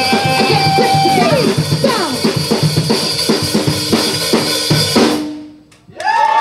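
Live noise-rock band with electric guitar and drum kit playing loud: a high held note slides down about a second in, then the drums hammer a run of hits about three a second under a lower held note, before the music fades out near the end.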